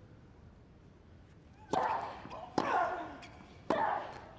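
A tennis rally: three racket strikes on the ball about a second apart, each followed by a player's loud grunt.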